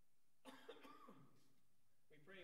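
Near silence, then from about half a second in a faint cough and soft voice sounds from people in the room.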